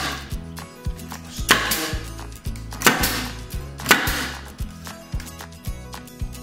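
Pneumatic staple gun firing staples through plastic fencing into a 2x4: three sharp shots about a second apart, each with a short hiss of air, over background music.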